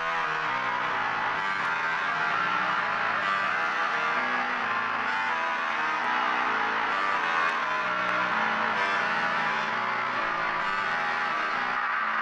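A sustained melodic instrument loop playing back in FL Studio, its notes changing about once a second, at a steady level. It runs through an EQ, delay and compressor effects chain whose slot order is swapped during playback.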